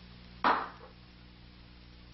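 A single sharp knock or bang about half a second in, dying away quickly, with a faint second bump just after.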